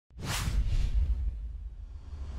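Whoosh sound effect of an animated logo intro, sweeping in about a quarter second in and fading out over the next half second or so, over a deep low rumble.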